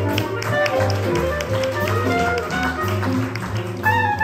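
Live small-group jazz: piano playing a busy melodic line over walking upright bass and steadily ticking cymbals. A clarinet comes in on a held note just before the end.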